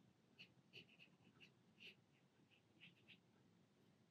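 Near silence, with a few faint short scratches of a watercolour brush stroking across paper.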